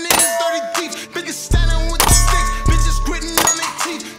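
Shots from a Kriss Vector .45 ACP carbine, with steel targets ringing after the hits. A hip-hop beat with heavy bass plays underneath.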